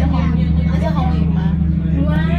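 Steady low engine drone heard inside the hull of a semi-submersible tour boat, with people talking over it.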